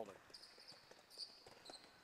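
Faint basketball dribbling on an indoor hardwood-style court, a few soft bounces, with a faint thin high tone through most of it.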